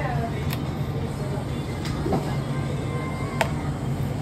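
A steady low hum with three sharp clicks of a metal spoon against a steel tin as butter is scooped and spread on pav.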